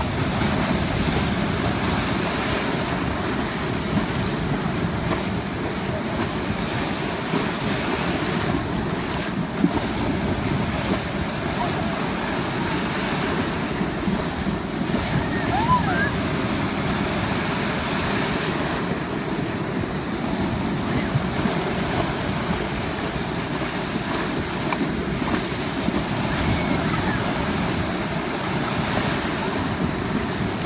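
Ocean surf breaking and washing around horses wading through the waves, with their legs churning the water, heard through steady wind noise on the microphone.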